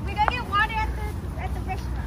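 Indistinct talking in the first half, over a steady low rumble.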